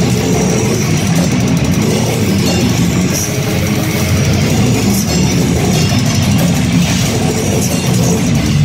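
A heavy metal band playing live at close range: electric guitars and bass through amplifier stacks over a drum kit with cymbal crashes, loud and continuous.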